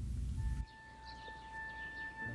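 A low rumble that cuts off abruptly about half a second in, followed by birds chirping in the open air and a single held note as background music starts.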